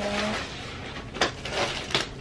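Rustling and handling of a cloth tote bag as shipping mailers are packed into it, with a sharp click a little over a second in.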